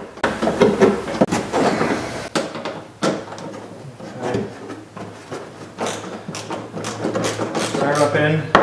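Irregular clicks, scrapes and knocks of hand work on a car's plastic bumper cover and fender: a bolt and a small hand tool being worked into the fender at the wheel well.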